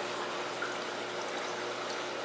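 Aquarium filtration water noise: a steady bubbling, trickling wash of water with a faint steady hum beneath it.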